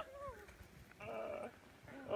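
A person laughing: a laugh trails off with a falling pitch at the start, and a short drawn-out vocal sound comes about a second in.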